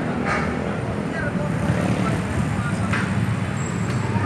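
Street traffic running steadily on a busy city road, with motorbikes and cars passing, and indistinct voices of people nearby.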